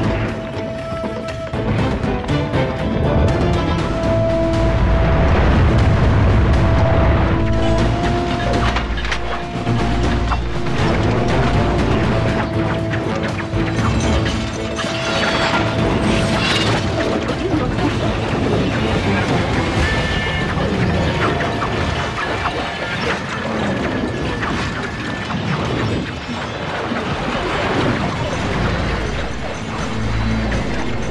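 Dramatic film score with held notes, deep booms and a dense metallic clatter and rattle: the sound effects of a great many swords shaking loose and flying through the air.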